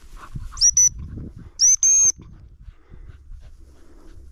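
Gundog whistle blown by the handler to signal a working cocker spaniel: a short high pip about half a second in, then a longer blast about a second and a half in, over the rustle of walking through dry tussock grass.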